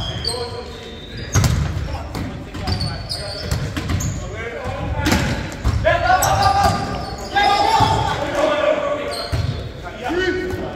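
Volleyball rally in a gymnasium: several sharp slaps of the ball being hit and striking the hard floor, with players shouting calls, all echoing in the large hall.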